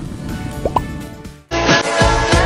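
Background music cuts off and a fading wash of transition sound follows, with a short rising blip sound effect about two-thirds of a second in; after a brief drop almost to silence, a new music track starts about one and a half seconds in.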